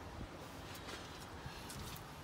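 Faint steady background noise with a few light clicks and rustles, like a phone being handled.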